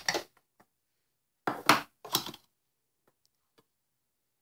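A metal spoon scooping ground coffee in a coffee grinder's plastic grounds bin: two short scrapes about a second and a half and two seconds in, then a few faint clinks.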